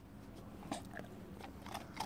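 A dog chewing a treat: faint, irregular crunching.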